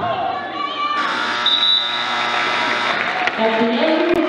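Basketball scoreboard buzzer sounding for about two seconds as the game clock runs out, ending the first period, over crowd voices and some cheering.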